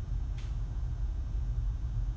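A steady low background hum with one faint click about half a second in.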